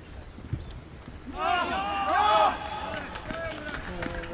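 A single thump about half a second in. Then, from about a second and a half in, several voices shout together for about a second, loud and overlapping, as a goal goes in during a football match; quieter calls follow.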